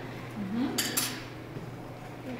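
Two quick, high clinks about a fifth of a second apart, with a ringing edge, just after a short rising voice-like sound.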